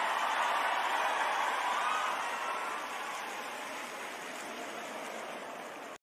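Large arena crowd applauding, an even wash of clapping that is loudest in the first couple of seconds and then slowly fades.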